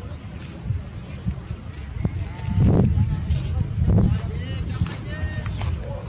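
Wind buffeting an open-air microphone in low gusts, loudest about halfway through and again around four seconds in, with faint distant voices behind it.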